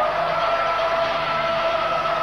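Industrial rock band playing live, recorded loud and distorted by a camcorder in the crowd: one steady held note rings over a dense noisy wash.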